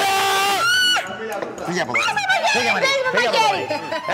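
A person lets out a loud, long yell at one steady pitch that breaks into a higher, wavering shriek about a second in. Excited chatter from several people follows.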